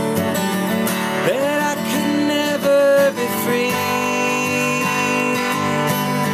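Acoustic guitar strummed steadily, with a melody line on top that slides up into its notes several times.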